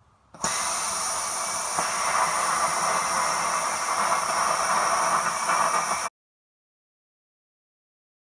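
Hypertherm Powermax 30 air plasma cutter's torch cutting through steel plate: a steady hiss that starts about half a second in and cuts off suddenly about six seconds in.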